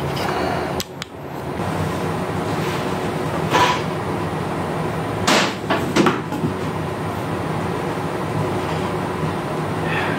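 Steady background hum with a few knocks and clunks about midway, from a person swinging onto and settling on the steel frame of a homemade mini bike whose engine is not running.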